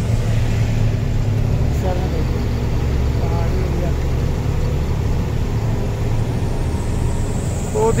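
Cab interior of a diesel goods truck on the move: the engine's steady low rumble and road noise, with heavy rain on the cab and windscreen.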